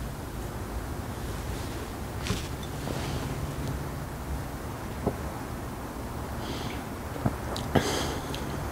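Steady low background hiss and hum, with a few faint short clicks and mouth sounds from a man silently tasting a sip of beer.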